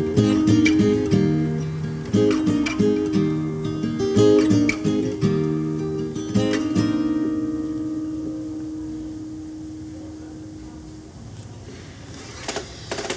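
Acoustic guitar picking the closing phrase of a song, then a last chord left to ring and fade away over several seconds.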